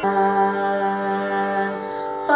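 A woman singing one long, steady note of a Carnatic swara exercise, which stops just before the end.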